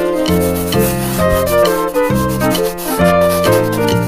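Background music: a simple tune of short notes changing about every half second over a bass line, with a scratchy rubbing noise mixed in.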